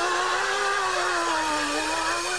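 A long, buzzy held tone whose pitch slowly wavers, from the comedy skit's soundtrack.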